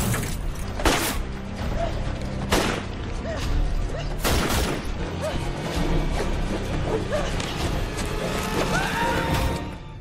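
Dramatic film score under action sound effects, with loud crashing impacts about one, two and a half, and four and a half seconds in.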